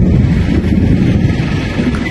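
Car engine idling, a steady low rumble.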